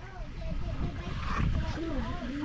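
Indistinct voices of people talking in the background, over a low rumble.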